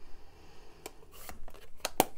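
Hands handling craft supplies on the work table: a few light clicks and a short scratchy rustle about a second in.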